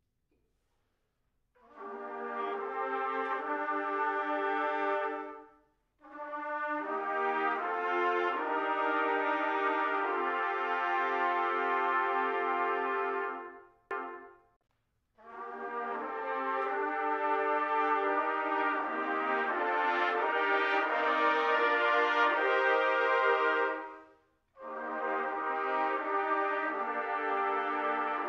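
Trumpet ensemble playing sustained chords in long phrases, an arrangement of a piece for women's choir. It enters about a second and a half in, with short breaks between phrases.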